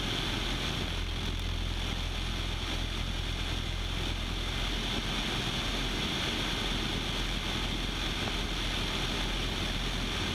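Steady drone of a Citabria light aircraft's engine and propeller in level flight, mixed with the rush of wind over a camera mounted outside the plane.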